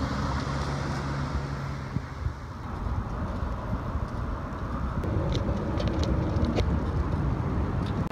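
Outdoor traffic and wind rumble while riding a bicycle with a handheld camera, with a car going past in the first couple of seconds.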